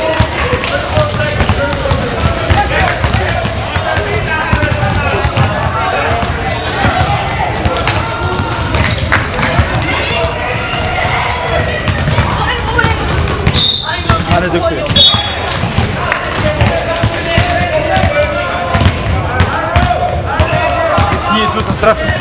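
Basketball bouncing on a sports hall floor during play, with many short knocks throughout and players' voices around it. Two short, high whistle blasts sound about two-thirds of the way through, the second shorter than the first.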